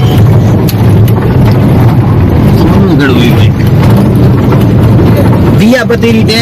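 Loud, steady low rumble of a car in motion, heard from inside the cabin.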